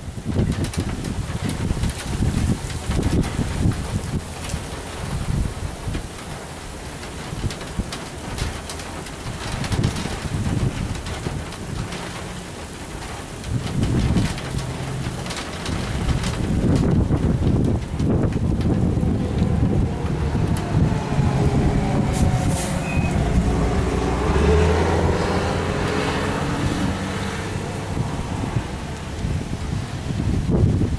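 Gusty wind buffeting the microphone during a severe thunderstorm, loud and uneven. In the second half a louder rumble with a pitched, engine-like drone joins it.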